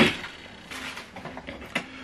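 A plastic inkjet printer being handled and turned around on a table: a knock at the start, then faint scraping and handling noise.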